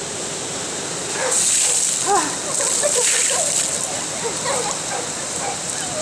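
A dry bag of ice water emptied over a person: a splashing pour starting about a second in and lasting about a second, over the steady rush of a stream. Short gasps and voices follow.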